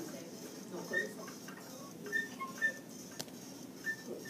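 Quiet room tone from a voice-over recording: a low hiss with a few faint short high blips and a single faint click about three seconds in.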